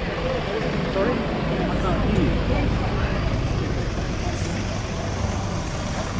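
Steady outdoor background noise with a low rumble, and people talking faintly in the background.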